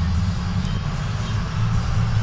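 Steady low rumble inside the cab of a 2005 Ford F-350 crew cab on the move: its 6.0-litre Power Stroke V8 turbodiesel mixed with tyre and road noise.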